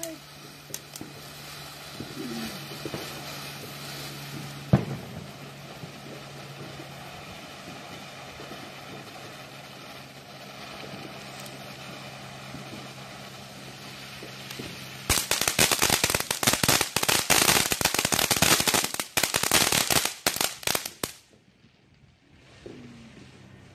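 Fireworks going off: one sharp bang about five seconds in over a low steady hum, then a long run of rapid crackling pops, like a string of firecrackers, that stops abruptly near the end.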